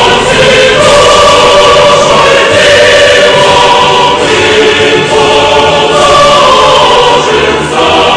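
A choir singing slow, held notes that change every second or two, loud and steady throughout.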